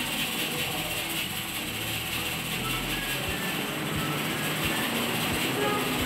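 Steady, loud hissing background noise with a few short, soft low thumps in the second half.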